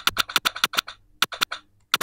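Two quick runs of sharp clicks, about eight a second, with a short pause about a second in. These are computer-keyboard hotkeys tapped rapidly to retrigger a VirtualDJ cue point, so the start of the track stutters with each press.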